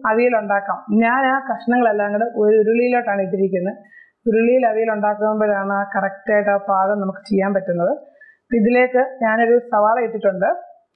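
A woman's voice speaking in Malayalam, explaining the recipe, with two brief pauses.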